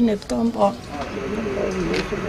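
A woman's voice speaking briefly in the first moments, then quieter outdoor background with a faint, low, wavering call.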